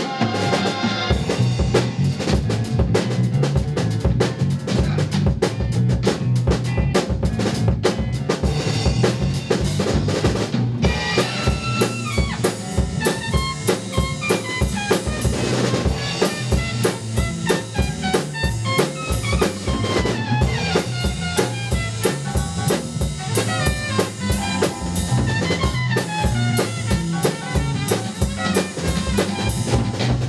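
Live band playing an instrumental break, led by a drum kit with a steady pattern of kick, snare and rimshot strokes. From about eleven seconds in, a lead instrument plays a melodic solo over the drums.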